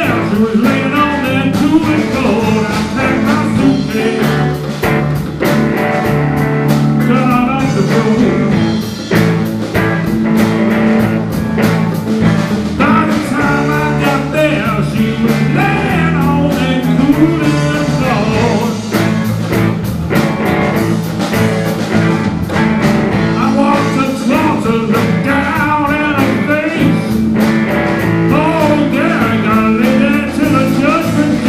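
Electric blues band playing live: two electric guitars over a drum kit and hand drum, with a steady driving beat.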